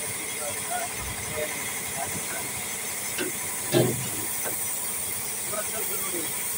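Compressed-air gravity-feed paint spray gun hissing steadily as it sprays paint onto a steel body panel. About four seconds in there is a brief louder sound.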